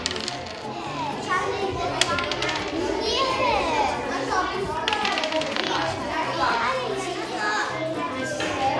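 Children talking and calling out to one another at a table, over soft background music, with a few sharp clicks.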